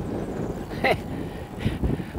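Team car following close behind a road cyclist, its engine running under a steady low noise of wind on the microphone. A short voice sound comes about a second in.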